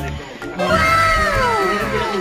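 A single long, drawn-out animal-like cry that starts about half a second in, rises briefly, then slides down in pitch. It plays over background music with a steady beat.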